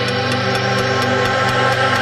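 Electronic dance music build-up: sustained layered synth chords with a light hi-hat ticking about four times a second, leading toward a drop.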